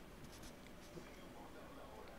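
Near silence in a small studio room, with a few faint scratches and ticks, like small handling sounds at the desk.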